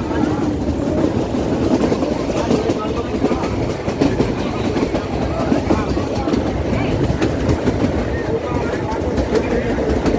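Narrow-gauge train of the Kangra Valley Railway heard from on board, running along the track: a steady rumble of wheels on rails with a scatter of small clicks and rattles.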